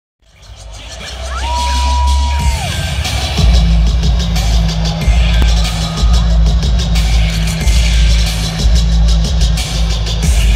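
Live bass-heavy electronic dance music played loud over a concert PA and recorded from the crowd. It fades in over the first two seconds, a high held tone slides down, and a heavy bass line drops in about three and a half seconds in.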